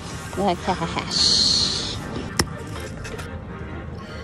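Brief voices, then a high hiss lasting nearly a second and a single sharp click.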